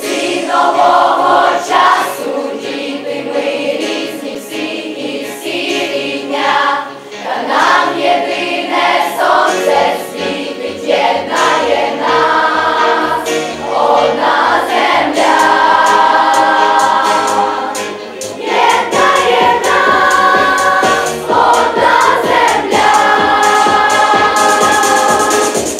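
A choir of young voices singing a song together over an instrumental backing track. A steady bass beat joins about ten seconds in.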